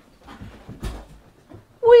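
Soft rustling and a light knock as a man turns in a swivel office chair. Near the end he lets out a loud, drawn-out 'whee!' that slowly falls in pitch.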